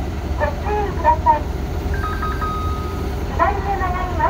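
Heavy diesel engine running steadily with a low rumble, with a voice in short pitched phrases over it.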